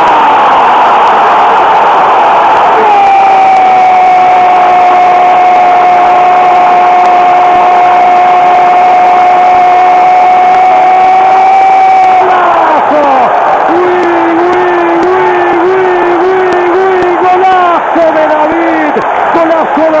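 Spanish-language football commentator's goal call: a single long, high held "goool" lasting about nine seconds, then further shouted, wavering cries, all over a cheering stadium crowd.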